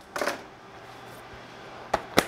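A brief rustle of a plastic mailer package being picked up and handled, then a single sharp click near the end.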